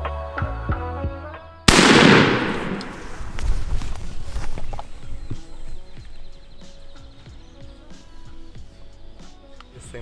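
Background music, cut off about two seconds in by a single loud shotgun blast that rings out and fades over a second or so; quieter music and scattered knocks and rustles follow.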